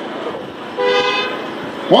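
Car horn sounding one short, steady toot of about half a second, about a second in, over street background noise.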